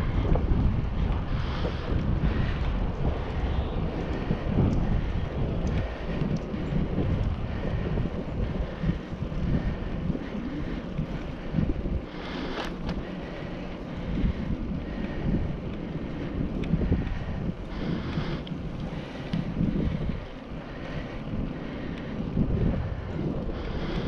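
Wind buffeting the microphone of a camera on a moving bicycle: a loud, uneven low rumble that rises and falls in gusts, with one sharp click about halfway through.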